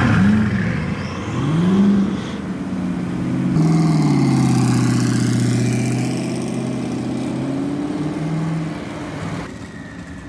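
Supercar engines from a Bugatti Chiron and a Ford GT driving off: two short revs in the first couple of seconds, then a long hard acceleration from about three and a half seconds in. The engine sound fades near the end as the cars move away.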